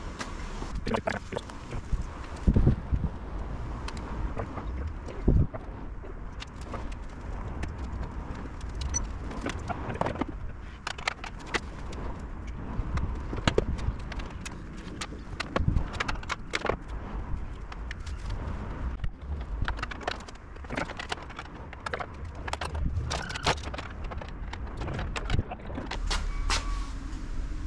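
Irregular clicks, clinks and knocks of small fixings and hand tools as rear light units are bolted onto a classic Mini's rear panel, with a couple of louder knocks in the first few seconds, over a low steady rumble.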